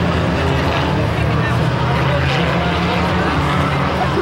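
Four-cylinder pro-stock race car engines running slowly in a pace line, a steady low drone, with people talking nearby.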